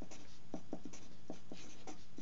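Felt-tip marker writing on paper: quick, irregular pen strokes rubbing across the sheet a few times a second as handwritten words are formed.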